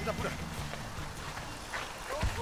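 Runners' footsteps on a path, with faint voices.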